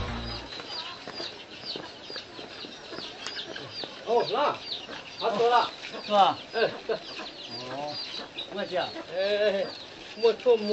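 Domestic chickens: high, short falling peeps repeating several times a second, joined from about four seconds in by louder clucking calls.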